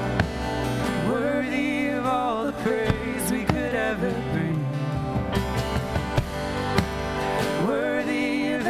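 Live band music: a man singing a slow melody over strummed acoustic guitar, with electric guitar and percussion strikes behind him.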